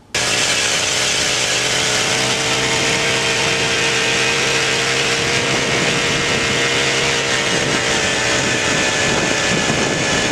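Eskimo power ice auger running steadily under load, its small two-stroke engine driving the red bit down through thick lake ice. The loud engine note cuts in abruptly and holds a steady pitch.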